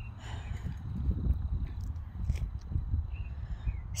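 Low, uneven rumble of wind and handling on a phone's microphone as it is moved, with a few faint bird chirps and light clicks.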